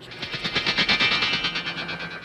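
Electronic 'bionic power' sound effect, the fast fluttering buzz from 1970s bionic TV shows, played over the studio sound system. It starts suddenly and runs steadily with a quick, even flutter.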